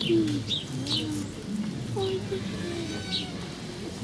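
Ring-tailed lemurs calling at close range: a string of short, soft calls that bend up and down in pitch, with brief high chirps between them.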